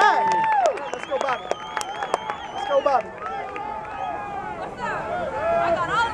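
Football spectators in the stands talking and calling out over one another, with a few scattered claps about a second or two in.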